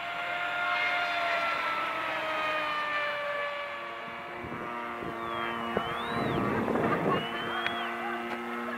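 Cox .049 glow engine on a small model plane whining at full throttle high overhead, its pitch slowly falling as it fades over the first half. From about halfway a lower, steadier engine drone from another model plane takes over.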